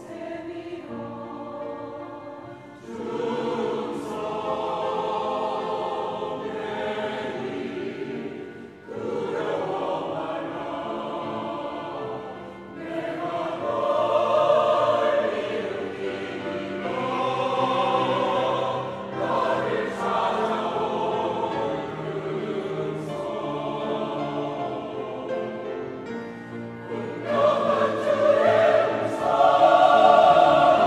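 Mixed church choir of men and women singing a Korean sacred anthem in sustained, legato phrases, starting softer and growing loudest near the end.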